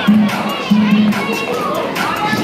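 A crowd of children shouting and cheering over loud music, whose low bass note sounds twice.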